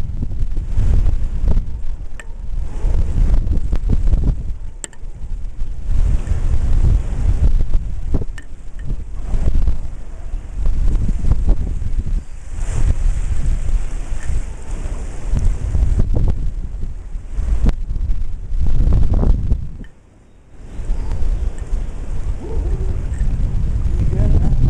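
Wind buffeting the microphone in rough gusts over the wash of ocean surf. The gusts drop away briefly about twenty seconds in.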